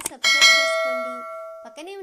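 A bell-chime sound effect from a subscribe-button animation: one bright ding about a quarter second in, ringing with many overtones and fading over about a second and a half.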